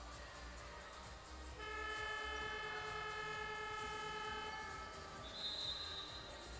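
Basketball arena scoreboard horn giving one steady blare of about three seconds during a team timeout, the signal that times the timeout. Near the end, a short high whistle blast, as from a referee's whistle, over low arena music.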